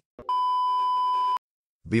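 A single steady electronic beep, one unchanging high-pitched tone lasting about a second.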